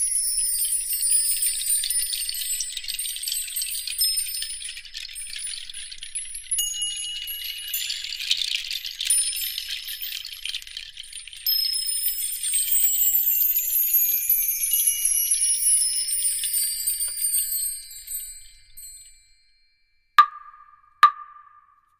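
Background music of shimmering, twinkling chime tones that slide slowly downward in pitch, fading out near the end.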